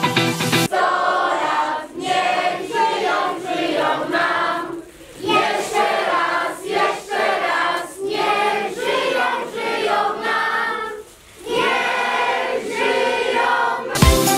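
Music: a choir singing without drums or bass, coming in under a second in where a beat-driven track stops, with two short breaks between phrases.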